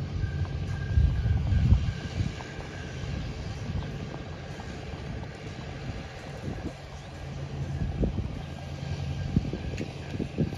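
Wind buffeting the microphone over a steady low engine hum, with the strongest gusts about one to two seconds in.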